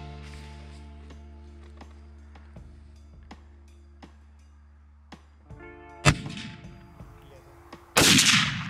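A single rifle shot from a scoped bolt-action rifle about six seconds in, sharp and loud with a short trailing echo, over steady background music. Another loud bang comes right at the very end.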